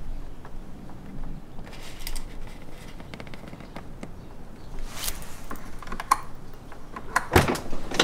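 Small clicks and rustling as hands work a jump-pack cable in behind a Honda Gold Wing's saddlebag. Near the end comes a sharp clunk: the electric saddlebag latch releasing once the jump pack powers it.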